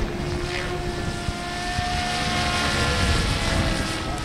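Goblin 700 radio-controlled helicopter in flight overhead: a steady motor and rotor whine whose pitch rises slightly and eases again, a little louder near the end.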